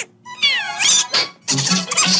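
Donald Duck's voice giving a short squawk that dips and then rises in pitch. The cartoon's orchestral score comes back in near the end.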